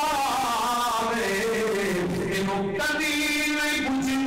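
A man chanting Punjabi Sufi verse into a microphone in a slow, drawn-out style, holding long notes that glide up and down in a melody.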